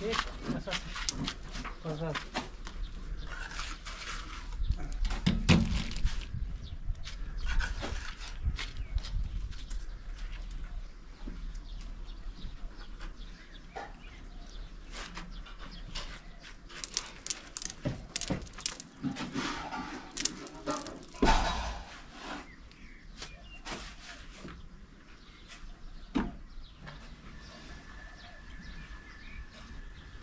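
Scattered sharp clicks, knocks and scrapes of a mason's trowel and blocks on the top course of a limestone block wall, with brief voices in the background.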